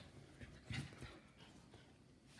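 Faint sounds of a miniature schnauzer and a giant schnauzer play-wrestling on a leather couch: a few soft scuffles and a brief dog noise about three-quarters of a second in.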